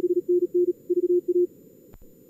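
Morse code (CW) on a single low-pitched tone, keyed at high speed (about 45 words per minute) for about a second and a half over steady simulated receiver hiss, from a contest-logger practice simulator. A sharp click comes near the end.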